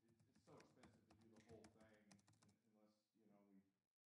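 Faint typing on a computer keyboard: a quick run of clicks over the first two and a half seconds or so. Faint, indistinct voices run underneath.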